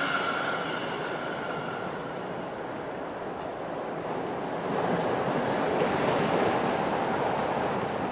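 Ocean surf breaking and washing in: a steady rush of water that grows louder for a few seconds past the middle.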